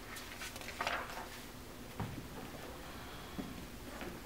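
Faint rustling and scuffing from a person moving about on a wooden floor and handling a puppy, with a soft thud about two seconds in and a lighter one near the end.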